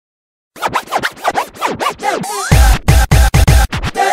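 Electronic music soundtrack that opens with a quick run of DJ-style scratches starting about half a second in. A rising sweep follows, and heavy bass-driven beats come in about halfway through.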